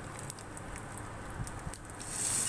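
Tempering of cumin, urad dal and curry leaves crackling and sizzling in hot oil in a small pan: scattered sharp pops over a steady hiss.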